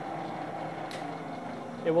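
Hobart H600 mixer running, its motor and gear transmission turning the dough hook in the bowl with a steady hum. A faint click comes about a second in.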